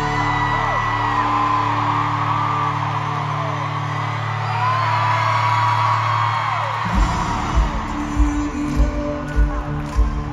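Live band music in an arena with the crowd screaming and whooping over it: a held low chord at first, then about seven seconds in a kick-drum beat starts, a thump roughly every 0.6 seconds.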